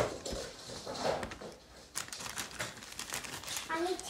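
Clear plastic zip-lock bag crinkling and crackling as it is handled, the crackles coming thicker from about halfway in, with a brief child's voice near the end.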